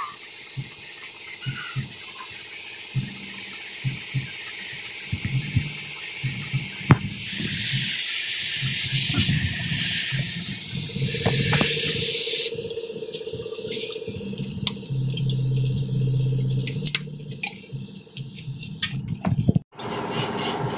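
Compressed air hissing steadily through a gravity-feed paint spray gun as it sprays paint. The hiss grows louder midway and cuts off suddenly about twelve seconds in, leaving a low hum and scattered clicks.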